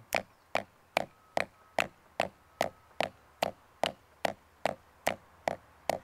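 Drumstick buzz strokes on a practice pad: short, compressed multiple-bounce 'crushes' played with the left hand as steady eighth notes, about two and a half a second.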